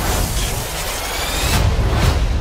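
Cinematic trailer sound effect: a dense rushing noise over a deep rumble, with a faint rising sweep, its highest part falling away near the end as the title card comes up.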